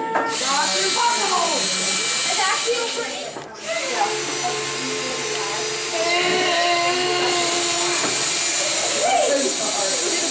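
Cordless drill motor whirring in runs as screws are driven into bat-house panels, with a steady held whine in the middle of the stretch, over children's chatter.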